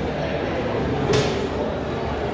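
Busy public-hall ambience: faint background chatter and room noise, with one short sharp clack just over a second in.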